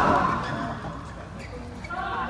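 Voices in an echoing sports hall: a loud call at the very start, then lower background chatter.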